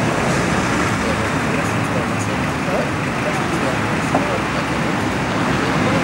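Steady hubbub of indistinct voices over a constant outdoor street noise like passing traffic, with no single voice standing out.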